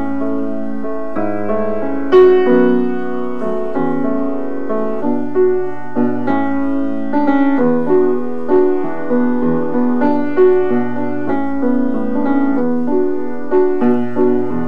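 Solo grand piano playing the introduction to a song: chords and a melody over a low bass line, with one louder chord struck about two seconds in.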